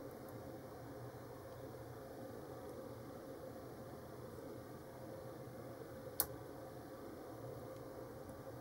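Hook pick working the pin stack of a brass Cocraft 400 padlock, mostly quiet over a faint steady hum, with one sharp click about six seconds in.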